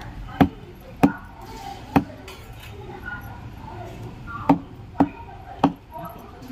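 Cleaver chopping meat on a wooden butcher's block: six sharp strikes in two sets of three, the first set in the opening two seconds and the second about halfway through.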